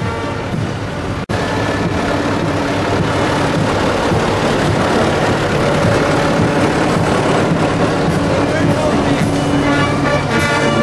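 Vintage tractor engines and other old vehicles running as they pass close by, with people's voices mixed in. Music plays for about the first second, then cuts off suddenly.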